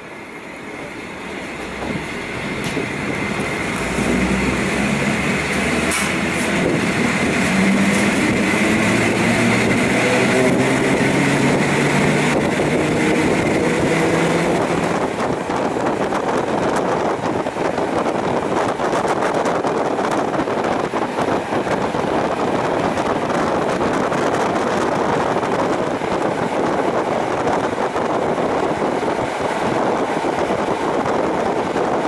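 EN57 electric multiple unit pulling away and accelerating: the hum of its traction motors climbs steadily in pitch for about ten seconds, then gives way to a steady running noise of the train at speed.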